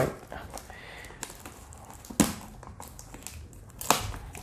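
Plastic parcel wrapping and tape crinkling and tearing as it is cut open with a multi-tool bracelet's cutter, with two sharp crackles, one about halfway and one near the end.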